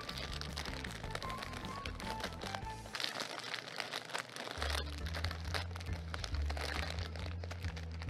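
Background music with a steady bass line, under the crinkling of a clear plastic bag as a folded cloth towel is pushed into it.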